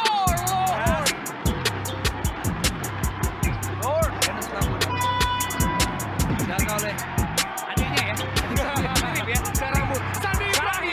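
Background hip-hop style music with a fast steady beat, laid over basketball game sound in which sneakers squeak briefly on the court at the start and about four seconds in.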